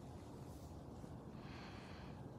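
Very faint background noise: a low rumble, with a soft hiss rising near the end.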